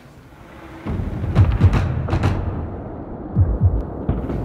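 Skateboard on smooth concrete flat ground: wheels rolling, then sharp clacks of the board being popped and landed for a nollie backside 360 kickflip about a second and a half in, with two heavier thuds near the end.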